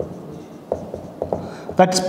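Marker pen writing on a whiteboard: a few short, separate strokes as words are written. A man's voice starts just before the end.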